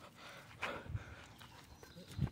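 Faint steps and shuffling on dry dirt and straw, with a few soft knocks about half a second to a second in.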